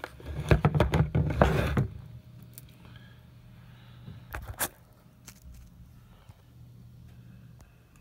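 Close handling noise of foam packing and a cardboard card, rustling and scraping for about two seconds, then quieter, with two sharp clicks about halfway through.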